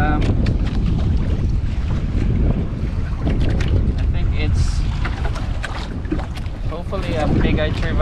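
Strong wind buffeting the microphone in a steady low rumble, with scattered small clicks and knocks. A voice speaks near the end.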